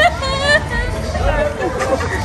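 Voices of a small group chatting over background crowd babble, with a high-pitched exclamation or laugh in the first half second.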